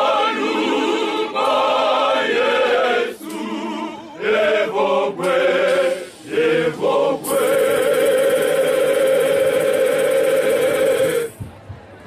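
Male choir singing in harmony: several short sung phrases, then one long held chord that cuts off about eleven seconds in.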